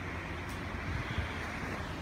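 Steady rush of wind and sea noise on a moving ship, with low rumble underneath and one brief click about half a second in.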